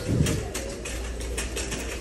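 Shopping cart being pushed along, with a run of light rattles and clicks from the cart and the items in it.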